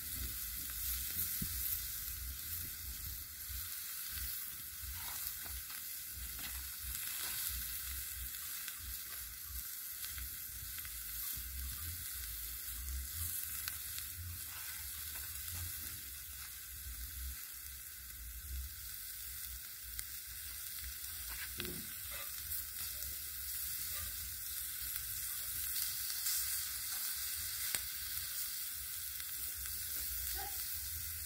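Zucchini and eggplant slices sizzling steadily on a hot steel griddle plate over a wood fire.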